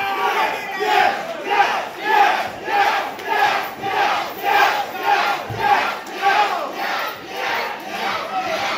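Wrestling crowd chanting in unison, a short shouted chant repeated in a steady rhythm of nearly two a second.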